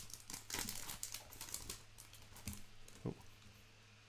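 Foil wrapper of a Topps Chrome baseball card pack crinkling as hands pull it open. It is loudest in the first second or two, then fainter, with a couple of soft knocks near the end.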